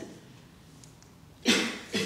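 A person coughing twice in quick succession about a second and a half in, after a moment of quiet room tone.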